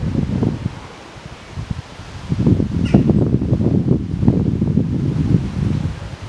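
Wind buffeting the microphone: an uneven low rumble that grows heavier about two seconds in.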